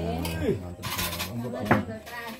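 Cutlery and dishes clinking during a meal, with a single sharp clink near the end.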